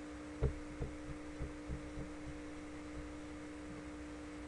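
Steady electrical hum with two held tones, under a string of soft low thumps about three a second through the first half, the first one, about half a second in, the loudest.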